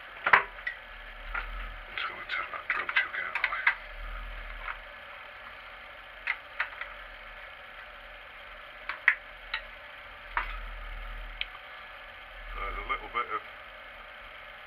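Small metal hand tools being handled on a milling machine table while a tap is set up: scattered clicks and clinks, one sharp knock just after the start and a busy cluster a couple of seconds in, over a low steady hum.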